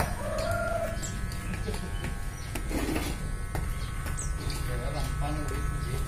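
Corded electric hair clippers running with a steady buzz while cutting hair, and short clucking calls of chickens in the background.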